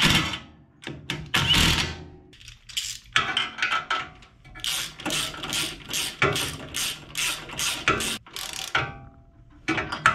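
A cordless driver spins a bolt in a couple of short runs near the start. Then a hand socket ratchet clicks in quick, even strokes, about three a second, on a small single-cylinder engine.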